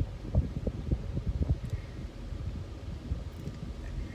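Low rumble inside a vehicle's cab as it rolls slowly over rough ground, with a steady hum and irregular soft thumps.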